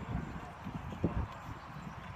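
Horse's hoofbeats: an uneven run of low thuds on the ground, one stronger about a second in.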